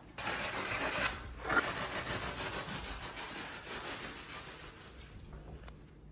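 Straightedge board being drawn back and forth across wet concrete to screed it level: a gritty scraping, loudest in the first couple of seconds and fading after.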